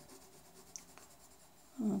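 A coloured pencil shading back and forth on paper: a faint, scratchy rubbing of repeated strokes.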